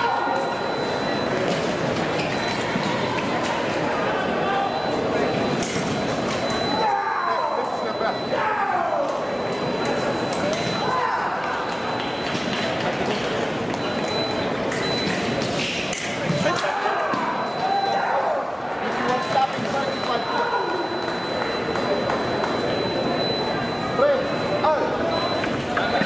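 Busy fencing-hall ambience: voices echoing around a large hall, with scattered sharp metallic pings and a faint high steady tone that comes and goes.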